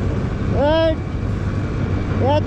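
Yamaha motorcycle running steadily at cruising speed on a gravel road, a continuous low rumble. About half a second in, a short pitched voice sound rises and then falls.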